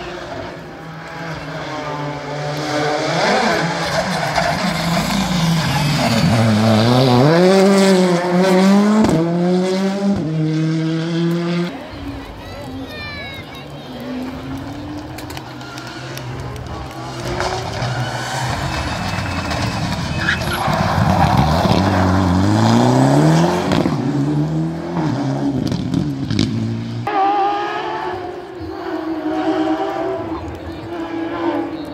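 Rally cars at full stage pace: engine revs climbing and dropping back with each gearshift as a car comes close and passes, then, after a lull just before halfway, another car does the same.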